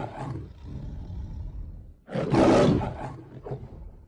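Recorded lion roars played as a sound effect: one tailing off, then a second roar about two seconds in that fades away.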